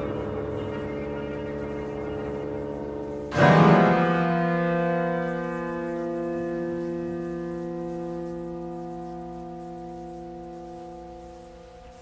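Chamber ensemble playing modern classical music: held tones, then a sudden loud chord about three seconds in that rings on and slowly dies away.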